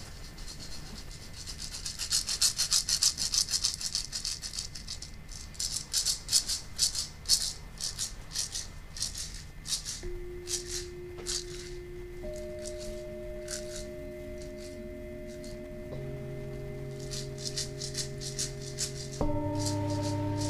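A shaker rattled in quick bursts of shakes. Then, from about halfway, a tuned steel drum is struck with a felt mallet, one note at a time, each note ringing on and overlapping the next in a slow rising cluster.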